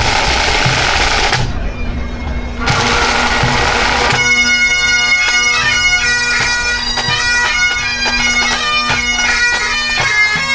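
Full pipe band striking in: a snare-drum roll, the bagpipe drones sounding, a second roll, then about four seconds in the chanters come in with the tune over the steady drones and the drum corps.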